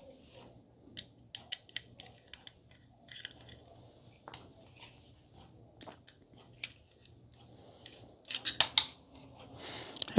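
Light metal clicks and small scrapes of a screwdriver and fingers working the screws of a laptop's metal hard-drive caddy, with a quick run of louder clicks near the end.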